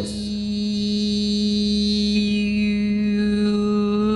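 A single sustained vocal drone, chant-like, held on one steady pitch, with a high overtone gliding downward through the middle, the kind of held vowel tone used to drive cymatic patterns.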